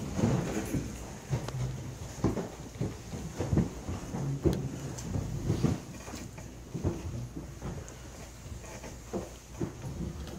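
People getting up from their seats around a table: irregular knocks, thumps and rustling as chairs shift and bodies move, over a steady low room hum.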